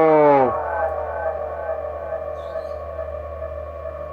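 The last syllable of a transmission through the echo added to a modified Midland 77-102 CB radio, trailing off into a slow, downward-gliding electronic tail that fades over about three seconds, over a low steady hum.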